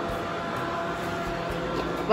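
Robot vacuum cleaner running across a tiled floor: a steady whirring hum of its fan and brushes.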